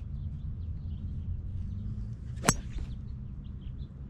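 A 5-wood fairway wood striking a golf ball from the edge of the rough: one sharp crack of impact about two and a half seconds in.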